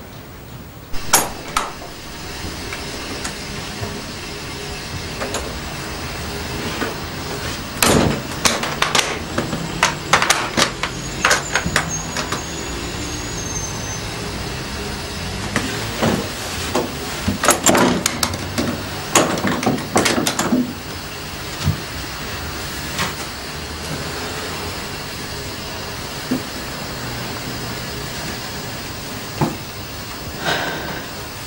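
A sharp click about a second in, then a shower runs steadily. Scattered clicks and knocks of things being handled come in two clusters, around eight to twelve seconds and again around sixteen to twenty-one seconds.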